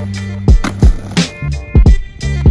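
Hip-hop beat with deep bass kicks that slide down in pitch and sharp snare and hi-hat hits, with no rapping.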